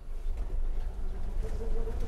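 A Ford Bronco driving slowly over a field, heard from inside the cabin: a low rumble of the engine and tyres that grows louder across the two seconds.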